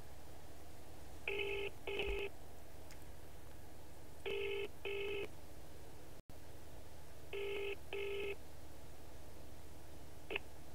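UK double-ring ringback tone on an outgoing call to a Scottish number: three ring-ring pairs about three seconds apart, over steady line noise.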